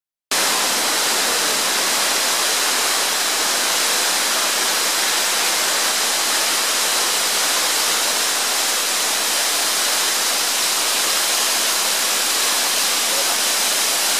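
Waterfall pouring down a rock face: a loud, steady rushing hiss of falling water.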